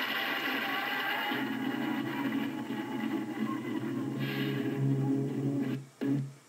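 Live punk rock band music, noisy and distorted, over a strong steady low drone, cutting out abruptly near the end.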